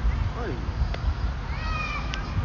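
Wind buffeting the microphone in a steady low rumble, with a short falling call about half a second in and a high, slightly falling call near the end.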